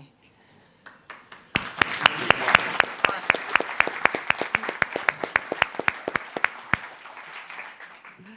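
Audience applauding, starting about one and a half seconds in and dying away near the end. Sharp single claps stand out above the crowd at about four a second.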